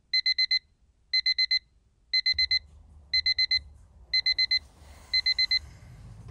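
Digital alarm beeping in quick groups of four, about one group a second, six groups in all, stopping shortly before the end: an alarm going off to wake a sleeper from a nap. A low rustling noise comes in under the beeps about two seconds in.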